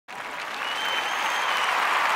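A crowd applauding and cheering, swelling steadily louder, with a high whistle held for about a second partway through.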